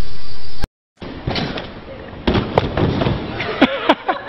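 A few sharp thuds of gymnasts landing on gym mats, among children's voices and shouts, after a short break to silence about two-thirds of a second in.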